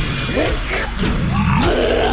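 Male singer's wordless vocalising into a studio microphone, the voice sliding up and down in pitch in arching swoops. A heavy rock backing runs underneath.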